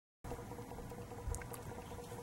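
Faint steady hum and rushing noise of a natural-gas boiler running in the basement, with a few light ticks.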